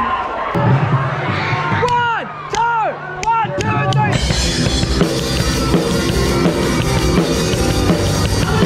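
A rock band on drum kit, electric guitar and bass kicks in suddenly about four seconds in, with crashing cymbals, heard from the drummer's seat. Before that there is a steady low bass note and a few short rising-and-falling pitched wails.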